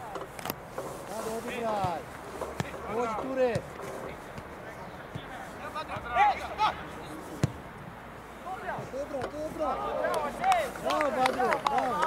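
Footballers shouting and calling to one another across an outdoor pitch, in short overlapping cries. Now and then a sharp thud of a ball being kicked.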